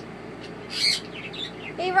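A young toco toucan's short, high-pitched call a little before the middle, followed by a few fainter chirps.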